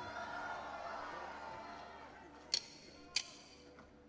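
Live audience noise dying away after the song announcement. Then a count-in of sharp, evenly spaced clicks, about 0.6 s apart, leads into the band starting a new song.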